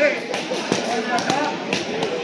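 Crowd chatter from spectators, several voices overlapping in a large hall, with a few short sharp knocks through it.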